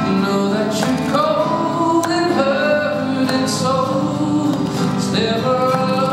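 A man singing a slow, sustained melody live into a handheld microphone, with acoustic guitar accompaniment.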